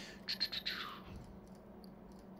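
A few computer mouse clicks, with a short high squeak that falls in pitch about half a second in.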